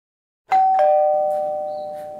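Two-note ding-dong doorbell chime: a higher note about half a second in, then a lower one a moment later, both ringing on and fading slowly.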